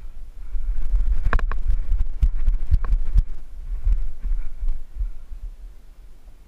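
Running footsteps thudding on the woodland floor close to the microphone: heavy, irregular low thumps with a few sharp cracks and rattles in the first half.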